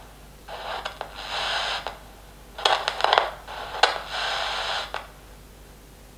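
Portable FM radio static: a hiss comes in twice, with crackles between, as the homemade transmitter's frequency potentiometer is turned, the radio drifting on and off the transmitter's signal while it is tuned.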